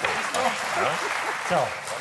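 Studio audience applauding, with voices talking over it.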